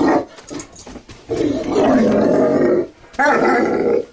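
Large fawn mastiff-type dog growling in long, drawn-out grumbles, about one and a half seconds each, three in a row with short gaps: a reluctant dog protesting at being ordered off the bed.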